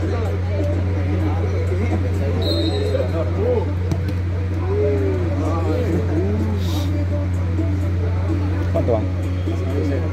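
Voices of players and spectators calling across a football pitch, with music in the background over a steady low hum.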